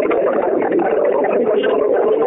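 Indistinct, overlapping voices and murmuring from many unmuted callers on a conference phone line, none of it forming clear words.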